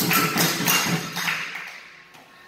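Capoeira roda music: rhythmic hand clapping with the atabaque drum and pandeiro jingles, dying away about a second and a half in.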